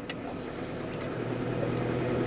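Car engine and road noise heard inside the cabin, a steady hum with a low tone that comes in about a second in and grows slightly louder.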